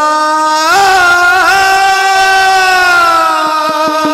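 Male ragni folk singer holding one long sung note that swells and bends up about a second in, then slowly falls. Fast drum strokes start near the end.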